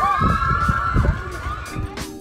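A rider screaming on the freefall drop: one long, high scream that trails off near the end, over wind rumbling and buffeting the microphone.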